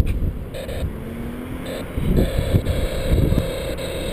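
Distant autocross car's engine revving in short bursts, coming on and off throttle, with wind buffeting the microphone underneath.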